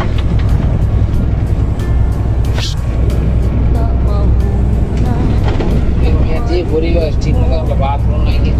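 Steady low drone of a large vehicle's engine and road noise heard from inside the cab while driving, with a voice and music over it.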